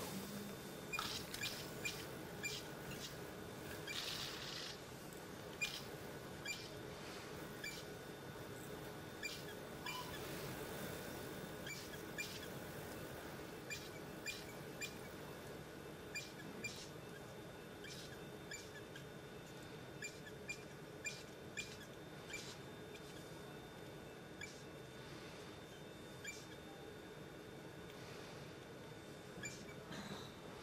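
A laparoscopic suction cannula sucking fluid and air from the operative field, giving many short, irregular high squeaks and clicks over a faint steady hum of operating-room equipment.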